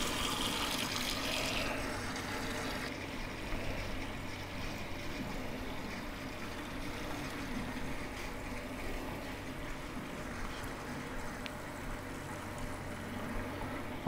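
Water from a gooseneck faucet running steadily into a stainless steel utility sink basin and down its newly connected drain, filling the P-trap as a first leak test. The stream is a steady rush of splashing water, a little brighter for the first couple of seconds.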